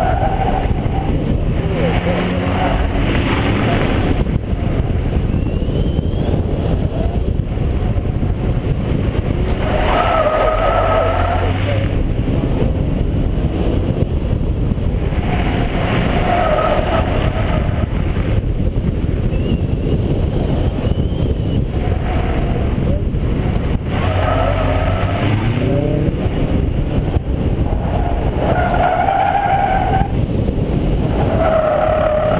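2010 Chevrolet Camaro V6 driven hard through an autocross course: the engine revs up and down between cones while the tires squeal in short bursts every few seconds through the corners. Heavy wind noise is on the car-mounted microphone.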